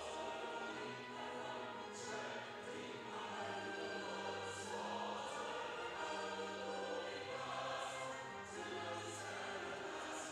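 Choir singing slow, sustained notes, with sharp 's' consonants coming through every few seconds.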